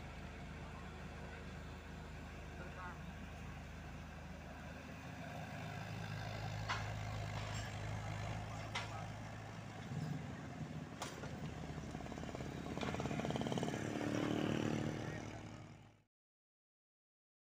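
Diesel engines running: an Isuzu dump truck moving off, then a Komatsu PC78UU mini excavator's engine humming steadily with a few sharp knocks. Near the end it works harder and louder before the sound fades out.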